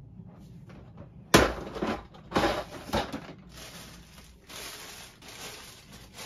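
A single sharp plastic clack about a second in as a clear plastic storage drawer is pushed shut, followed by a few shorter knocks and then the crinkling rustle of small plastic bags being handled.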